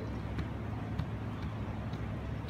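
Steady low hum of background noise, with a few faint clicks.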